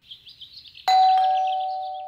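Two-tone ding-dong doorbell chime: a higher note about a second in, then a lower one, both ringing on and slowly fading. Faint bird chirping before it.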